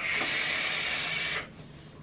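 A handheld vape drawn on: a steady hiss of air pulled through the device for about a second and a half, then stopping.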